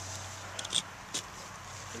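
Stroller harness straps being pulled tight through the buckle: a few short, faint clicks and rustles of nylon webbing and plastic buckle, over a steady low hum.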